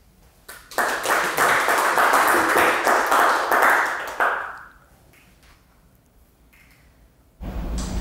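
Audience applause: many hands clapping for about four seconds, starting just under a second in and dying away, marking the end of the talk.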